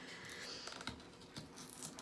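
Faint scraping of a metal melon baller digging into the firm flesh of a raw turnip, with a few soft clicks.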